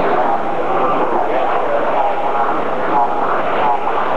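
Gym crowd at a wrestling match: many voices talking and calling out over one another, a steady, loud hubbub.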